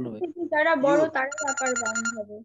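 Voices coming through an online video call, with a steady, high electronic ringing tone joining under them about two-thirds of the way in and holding for under a second.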